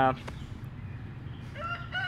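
A rooster crowing: one long held call that begins about one and a half seconds in.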